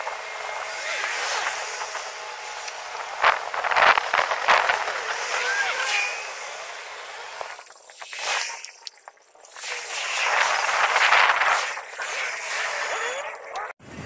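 Street traffic sound played back at eight times speed, so it comes out as a high, hissy rush with no low end, with short squeaky gliding chirps and a brief drop in level about eight seconds in.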